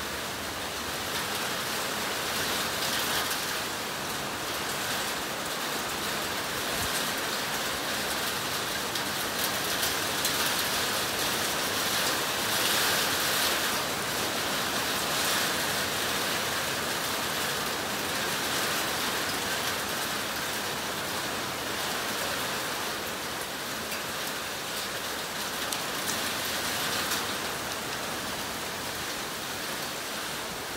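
Heavy, wind-driven rain pouring down in a steady hiss that swells louder and eases again, strongest from about ten to sixteen seconds in.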